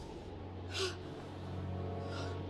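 A young woman's short, sharp gasp of breath, once, a little under a second in, over a low steady hum.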